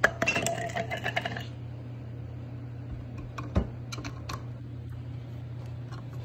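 Steel knife blade clinking and scraping against a glass jar of etching acid as it is lowered in: a ringing clatter over the first second and a half, then a few lighter taps, over a steady low hum.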